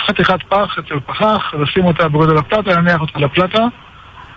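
Speech only: a man talking, with a thin, telephone-like sound, stopping shortly before the end.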